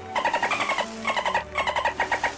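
Whale calls given as rapid, squeaky chattering trains, in three short bursts that each glide slightly down in pitch.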